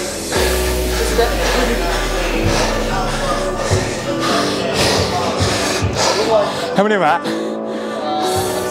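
Background music with sustained notes and a deep bass note through the first few seconds, with a wavering pitched glide about seven seconds in.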